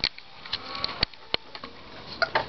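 A Toshiba laptop powering on with a CD in its drive: a sharp click at the start, then a faint rising whine and two more sharp clicks about a second in.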